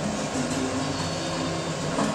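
Electric hair trimmer running steadily as it cuts close to the head.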